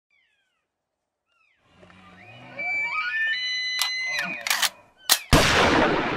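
Logo intro sound effects: electronic tones that glide and step upward in pitch, a few sharp clicks, then a loud burst of noise a little after five seconds in that dies away over about a second.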